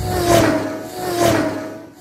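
Racing-car engine sound for a toy car race: a steady, slightly falling hum that swells twice as the cars go by.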